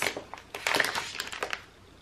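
Clear plastic zip-top bag crinkling as it is pulled open by hand: a dense crackle for about a second, fading near the end.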